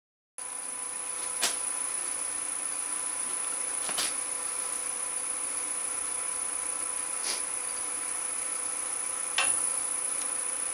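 Axminster wood lathe running steadily with a log blank spinning on it: a steady high-pitched whine over a hiss, with a few faint clicks. There is a moment of dead silence at the very start.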